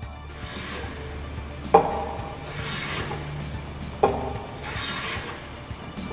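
A wooden strip knocked down onto a wooden workbench and slid against it, twice: each time a sharp knock followed by about a second of scraping, wood on wood.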